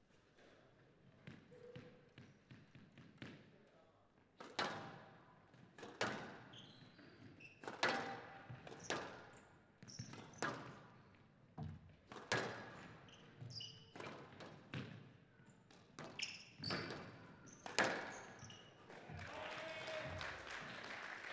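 A squash rally: a squash ball cracking off rackets and the court walls about once a second, each hit ringing on in the hall, faint at first and sharper after a few seconds.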